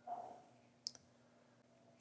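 Near silence, with a single faint, short click about a second in.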